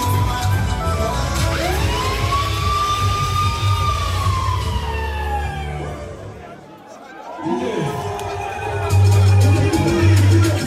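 Dance music with a heavy bass beat playing through a hall's sound system, with one long siren-like glide over it that rises quickly, holds, then slowly falls. The music fades out about six seconds in, giving way to crowd chatter, and the bass beat comes back near the end.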